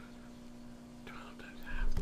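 A man whispering and muttering under his breath as he works through an arithmetic calculation, faint and indistinct, over a steady low hum.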